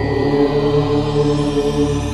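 A chanted mantra held on one steady low pitch, part of a devotional sign-change jingle, with the ring of a bell fading out behind it.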